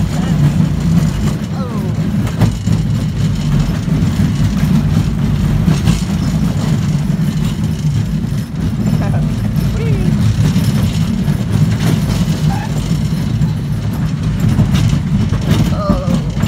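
Small kids' roller coaster train running along its steel track: a loud, steady low rumble with scattered rattles.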